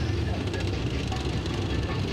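Leopard 2 main battle tank driving past on a dirt ground, its diesel engine and tracks making a steady low rumble.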